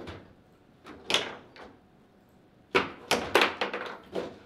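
Table football play: sharp knocks of the ball against the plastic figures, the table walls and the rods. There are a couple of knocks about one second in, then a quick flurry of loud knocks from near three seconds.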